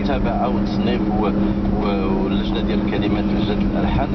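A man talking in Moroccan Arabic on a radio talk programme, heard over the steady low hum and rumble of a car being driven.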